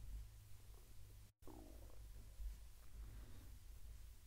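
Near silence: room tone with a steady low hum and a brief dropout about a second in.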